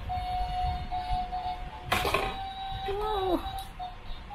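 Simple electronic tune from a toy claw machine, mostly one note held with short breaks. There is a sharp clack about two seconds in and a short swooping tone a little after three seconds.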